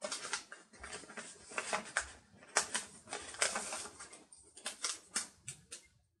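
A glossy sticker sheet and paper planner page rustling and crackling under the hands, full of quick crisp ticks and crinkles, as stickers are peeled off the sheet and a sticker strip is pressed onto the page.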